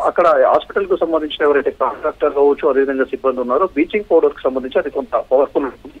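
Speech only: a man reporting in Telugu over a telephone line, his voice thin with the top cut off, talking without a break.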